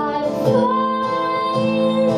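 A woman singing to her own acoustic guitar strumming, holding one long note from about half a second in.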